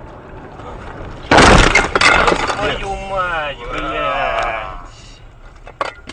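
A falling tree slams onto a car's windshield about a second in: a sudden loud crash of impact and cracking glass that carries on for over a second. A person then cries out for about two seconds, and a short click follows near the end.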